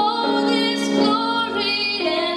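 A woman singing solo into a microphone through a PA, holding long sung notes that step to a new pitch about three times, with accompaniment underneath.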